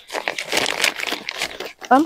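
Woven plastic cement sack rustling and crinkling continuously as it is handled and turned by hand.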